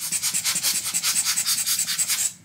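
Quick, even back-and-forth rubbing, about eight strokes a second.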